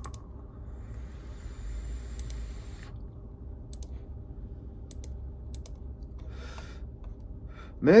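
A long draw on an e-cigarette: a faint hiss of air pulled through the atomizer for about two and a half seconds, followed by a few light clicks and a short breath.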